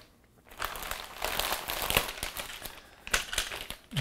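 Plastic parts bags crinkling and crackling as they are handled. The sound begins about half a second in and is busiest in the middle.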